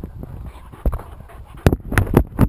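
A dog seizing a wooden stick in its mouth right next to the camera: a single knock about a second in, then a quick cluster of sharp knocks of teeth on wood near the end.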